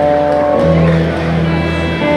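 Live blues-rock band playing a slow song: electric guitars hold long sustained notes over bass, and the low note changes just over half a second in.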